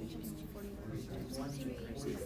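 Faint murmur of students' voices in a classroom, quieter than the teacher's speech around it.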